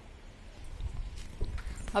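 Faint low rumble with a few soft knocks between pauses in speech, typical of handling noise from a hand-held camera being moved.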